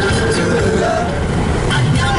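Steady road and engine noise inside a moving car's cabin at highway speed, with music and singing playing over it.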